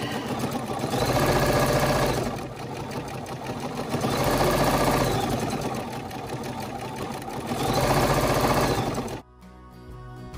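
Bernina sewing machine free-motion quilting, its running speed rising and falling in three surges, then stopping about nine seconds in. Soft music follows.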